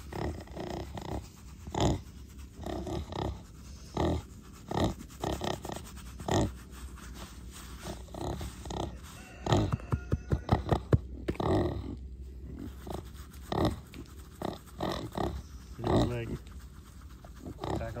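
Kunekune pig giving short, scattered grunts while lying down and being rubbed. About halfway through there is a quick run of scratchy clicks.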